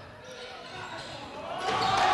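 Basketball game sound in a reverberant gym: a ball bouncing on the hardwood court over hall noise, with crowd voices starting to rise near the end.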